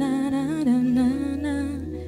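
Female voice singing a wordless, hummed melody over soft live accompaniment, with a brief pause in the voice near the end.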